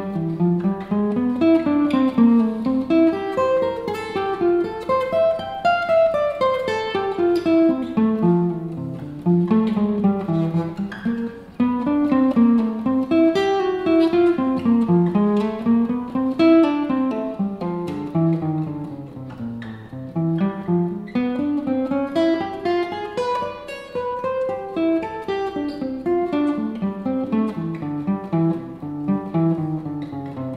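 Steel-string acoustic guitar playing single-note F major scale runs, a steady stream of picked notes climbing and descending again and again.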